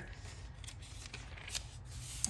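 Pages of a paper notebook planner being flipped and smoothed flat by hand, with a few soft rustles.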